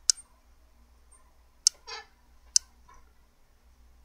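Three sharp computer mouse clicks, the first right at the start, the others about a second and a half and two and a half seconds in, as the video player is started and enlarged. A faint short sound follows the second click.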